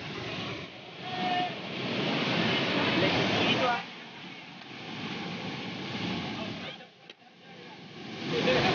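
A waterfall in full flow pouring over rock: a steady rush of water noise, with voices of bathers calling out faintly through it. The rush dips briefly about four seconds in and again about seven seconds in.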